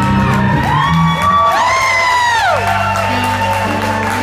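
Live band with a tenor saxophone holding a high note over steady bass and chords, while audience members let out two rising-and-falling whoops as the sax solo peaks.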